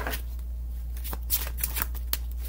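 Tarot cards being shuffled by hand: a quick, irregular run of soft flicks and slaps. A steady low hum lies under it.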